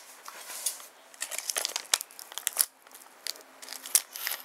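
Clear plastic card sleeves and a hard plastic card holder being handled, crinkling with scattered irregular clicks and crackles.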